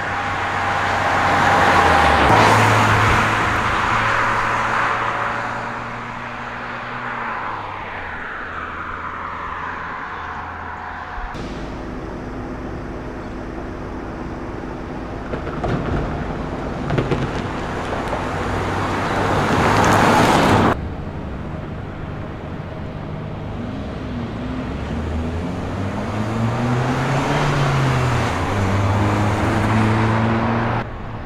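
2011 MINI Cooper S Countryman's turbocharged four-cylinder engine and tyres in a series of drive-bys. The car swells up and passes, with the engine pitch rising as it accelerates. The sound changes abruptly twice, at cuts between shots.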